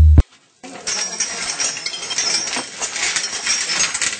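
Background music with a bass beat cuts off a fraction of a second in. After a short gap comes light clinking of small glass and metal objects being handled, over a steady hiss of room noise.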